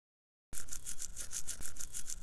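Toothbrush scrubbing teeth in quick, even back-and-forth strokes, roughly seven a second, starting about half a second in.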